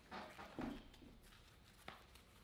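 Quiet handling noise of a fabric spinning-reel cover being turned in the hands: two soft rustles in the first second and a single sharp click near the end.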